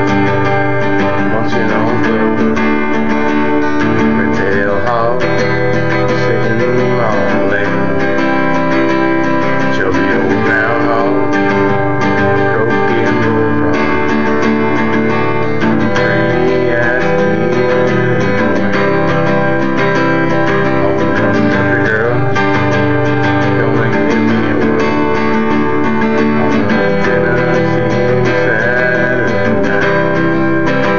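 Acoustic guitar with a capo high on the neck, strummed in a steady rhythm through an instrumental passage of chords.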